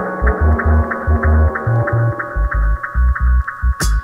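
Dub reggae track in a stripped-back passage: a deep, pulsing bassline under a muffled, ticking rhythm with the treble cut away. A little before the end, full-range drum and cymbal hits come back in.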